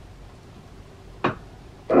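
A single short, sharp knock about a second in, against quiet room tone. Its source is not identified.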